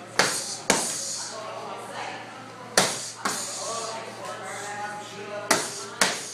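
Boxing gloves smacking against focus mitts: five sharp hits, in two quick pairs and then a single one.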